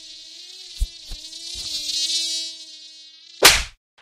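Mosquito buzzing close by as a sound effect: one steady whining buzz, wavering slightly in pitch, with a few soft thumps under it. It stops near the end and is followed by a short, loud burst of noise.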